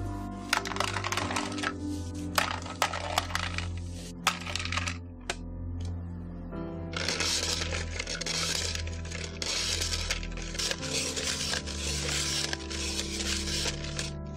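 A block of ice being shaved in an ice shaver: a scraping hiss of the blade on ice that comes in repeated strokes, about one a second, in the second half. Before that come clusters of sharp clicks and crackles of ice. Soft background music plays throughout.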